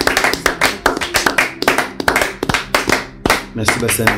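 A small group clapping their hands in a quick, fairly even run of claps, with voices speaking over it.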